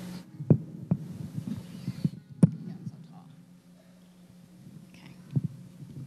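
Scattered low thumps and knocks on a live podium microphone as it is handled, over a steady low hum from the public-address system. The loudest thumps come about half a second and two and a half seconds in.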